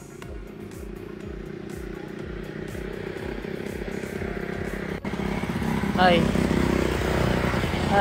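Background music fading into a steady hum, then, after a cut about five seconds in, louder road and traffic noise with a motorcycle passing, and a short voice calling out.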